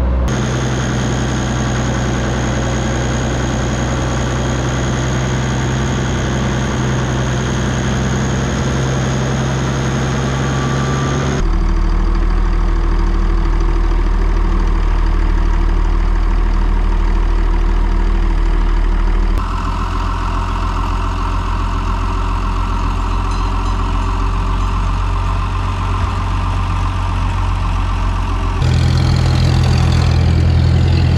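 Farm tractor engines running steadily, in several cut-together shots, with the engine note changing abruptly at each cut: about a third of the way in, about two-thirds in, and just before the end. In the last shot a Farmall Super M-TA tractor pulling a hay rake drives up.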